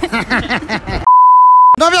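A single steady, high-pitched censor bleep about a second in, lasting under a second, with all other sound muted beneath it, edited over a spoken word. Speech comes just before and after it.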